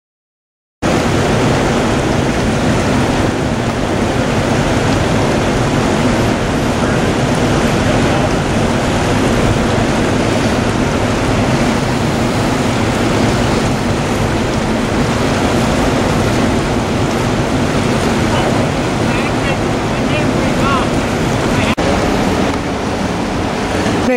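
Loud, steady rushing noise of a fast-flowing river with wind buffeting the microphone, cutting in suddenly about a second in.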